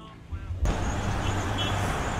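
Road traffic noise: a steady low rumble with a hiss over it, starting suddenly about half a second in.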